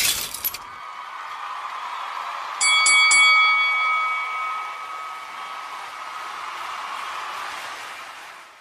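The tail of a glass-shattering sound effect, cut off about half a second in, followed by a logo chime: a held tone, then three quick bell-like strikes about two and a half seconds in that ring on and fade out near the end.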